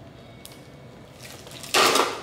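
Hard Parmesan cheese scraped across the blade of a plastic box grater: a faint rasp builds, then one loud grating stroke near the end. The cheese is tough to grate.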